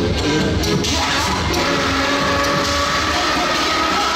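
Music playing loudly over a sound system in a large hall, with crowd noise beneath it.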